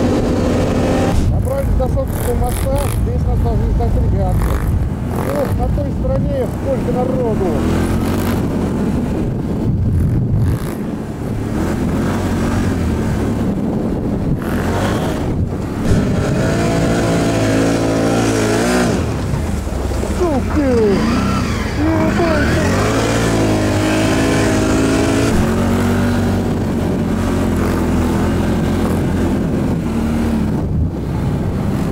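ATV engine running under way, its pitch rising and falling repeatedly as the throttle is opened and eased.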